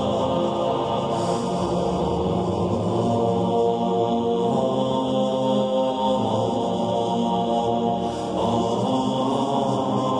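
Slow chanted vocal music of the programme's opening theme, voices holding long sustained notes; the notes change after a brief dip about eight seconds in.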